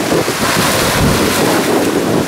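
Wind buffeting the microphone over shallow sea water splashing and lapping, the surface churned white by a stingray moving in the shallows. A steady, loud rush of noise.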